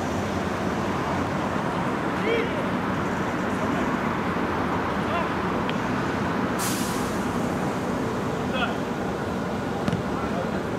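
Outdoor game ambience from a futsal pitch: a steady low noise bed with scattered distant shouts from players and onlookers, and a brief hissing burst about two-thirds of the way in.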